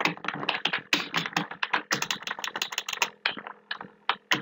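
Computer keyboard being typed on: a quick run of key clicks as a name is entered, with a short pause a little past three seconds in.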